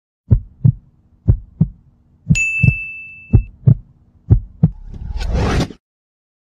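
Heartbeat sound effect: five pairs of low thumps, one pair about every second. A high ringing tone sounds for about a second partway through, and a swelling whoosh near the end cuts off suddenly.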